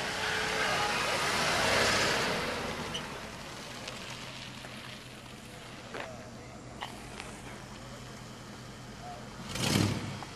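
A white Ford LTD Crown Victoria on oversized rims rolls slowly past, its engine and tyre noise swelling to a peak about two seconds in and then fading to a low steady hum, with faint voices behind it. A brief loud rush is heard just before the end.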